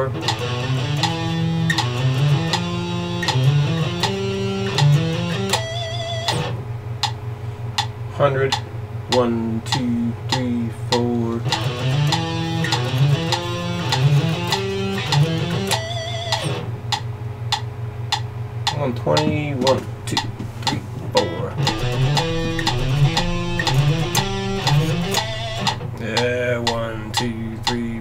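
Electric guitar playing a picking exercise of short note groups that cross from the low E to the A string after a downstroke, repeated at rising metronome tempos, with a metronome clicking along.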